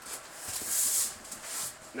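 Hand rubbing and poking at the torn, crushed cardboard of a large shipping box: two short scraping rustles, the first and louder about half a second in, the second near the end.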